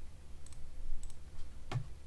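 A few light clicks from a computer keyboard or mouse, the loudest one near the end with a dull low knock, over a faint steady low hum.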